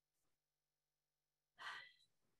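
Near silence, then one short breath from a woman near the end.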